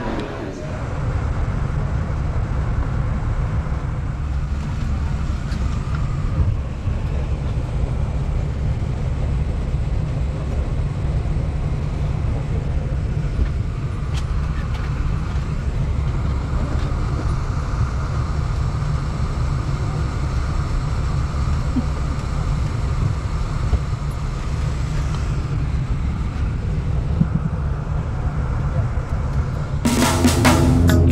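Steady low drone of airliner engines heard inside the passenger cabin.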